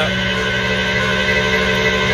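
Tow truck (wrecker) engine running at a steady speed, a constant drone with a high whine over it.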